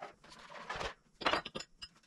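Kitchenware (cups, glasses and plastic containers) being handled in a wooden kitchen cabinet: a short scraping rustle, then a quick cluster of knocks and clinks a little over a second in.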